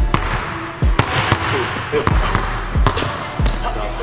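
A basketball dribbled hard and low on a hardwood gym floor: repeated bounces about one to two a second, over background hip-hop music.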